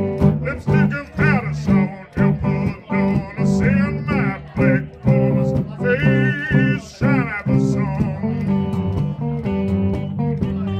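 Live electric blues played by a small band: a repeating low guitar riff keeps a steady rhythm while a lead part plays bent, wavering notes over it, with no singing.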